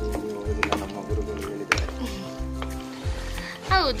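Background music with sustained tones over a repeating bass beat; a voice comes in near the end.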